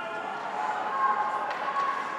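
Indistinct raised voices calling out during ice hockey play, with a few faint clicks from the ice.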